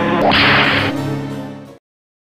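Keyboard music with steady held notes, cut across about a quarter second in by a loud swelling whoosh sound effect lasting about half a second; all sound cuts off suddenly near the end.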